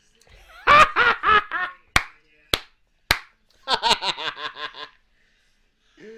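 A man laughing hard in loud pulsing bursts, with three sharp slaps about half a second apart in the middle, then another quick run of laughter.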